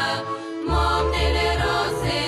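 Women singing a Bulgarian folk song, with a low bass accompaniment coming in under the voices less than a second in.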